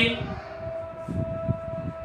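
A steady high-pitched tone holds one pitch throughout, with soft, irregular scratching from a marker writing on a whiteboard.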